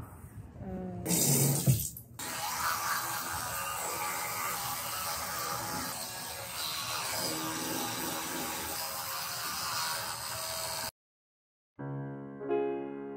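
A short burst of voice, then water running steadily from a bathroom tap into a sink while teeth are brushed. The water sound cuts off suddenly about a second before the end.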